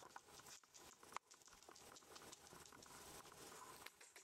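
Rough collie puppy's paws and claws pattering faintly on a wooden floor: light, irregular clicks, with one sharper click about a second in.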